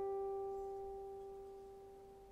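A single note on a steel-strung guqin, plucked just before and ringing on with clear overtones, fading steadily with no new note.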